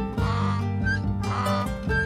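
Strummed acoustic guitar background music with two short animal calls laid over it, about a second apart.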